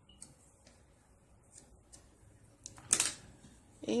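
Scissors cutting yarn: a few faint snips and handling clicks, then one sharp, louder click about three seconds in.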